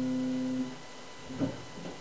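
Final strummed chord on a small classical guitar ringing on and then damped, cutting off suddenly about two-thirds of a second in. A brief soft vocal sound follows about a second and a half in.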